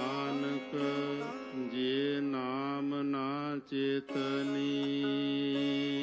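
Sikh Gurbani kirtan: a singer holds a long, wavering melismatic note over a steady harmonium drone, with a brief break just past halfway before the held chord resumes.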